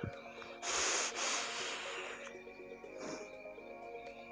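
A person taking a hit from an IJOY Jupiter vape set to 35 watts: a long breathy hiss of air and vapour starting about half a second in and fading after under two seconds, then a shorter, softer breath near three seconds. Steady background music plays underneath.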